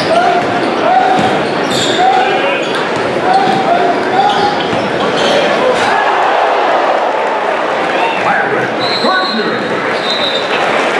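Basketball being dribbled on a hardwood gym floor amid steady crowd voices, echoing in a large gym.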